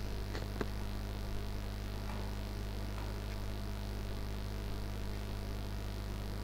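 Steady low electrical mains hum, with two faint clicks in the first second.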